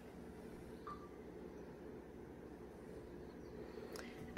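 Quiet room tone: a faint steady low hum, with one brief faint chirp about a second in.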